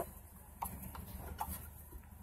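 A few light metal clicks as a threaded hydraulic hose coupler is fitted and turned by hand on the ram of a hydraulic body frame repair kit, trying to screw it on; the first click is the loudest.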